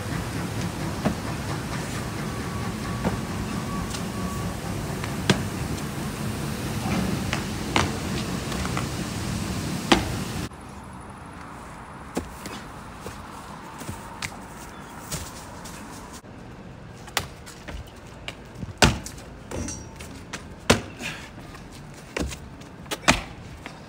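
Scattered sharp thuds and slaps of a freerunner's shoes landing on concrete and grass and his hands striking rails and walls, heard over outdoor background noise. The background noise drops suddenly about ten seconds in, after which the impacts stand out more sharply.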